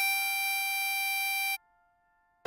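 10-hole diatonic harmonica in C holding a single blow note on hole 6 (G) as one long steady tone, which cuts off about a second and a half in.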